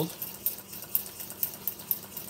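Metal whisk clinking and scraping against the inside of a stainless steel saucepan while stirring melted butter: a quick, irregular run of light ticks.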